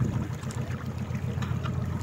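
Steady low background hum with faint room noise.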